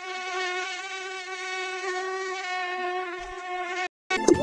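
Mosquito in flight: the steady whine of its beating wings, wavering slightly in pitch, fading in at the start and cutting off suddenly near the end.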